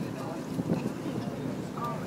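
Indistinct voices of people talking on a boat deck, over a steady low rumble and wind buffeting the microphone.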